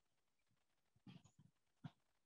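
Near silence: room tone, with a couple of faint, brief sounds a little past the middle and near the end.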